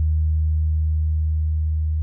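Music: a deep held bass note, nearly a pure tone, sustained steadily while the fainter upper notes of the chord die away.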